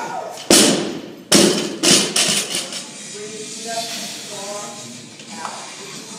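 A heavily loaded barbell with rubber bumper plates dropped from overhead: a heavy crash as it lands, a second heavy crash about a second later as it bounces, then a few smaller rattling bounces as it settles.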